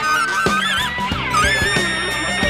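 Free-jazz band playing live: a high lead line wavers and bends, then settles on a held high note near the end, over drums and electric bass.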